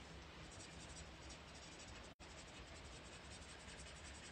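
Faint scratching of a colouring marker tip rubbing back and forth on cardstock as colours are blended, with a very brief drop-out about two seconds in.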